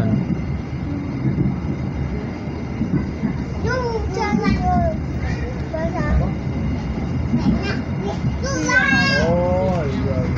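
Steady low rumble of a passenger train running along the track, heard from inside the carriage. A child's voice calls out twice over it, about four seconds in and again near the end.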